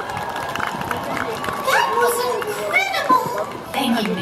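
Amplified stage-show voices over outdoor loudspeakers, with wide, swooping pitch, about halfway through.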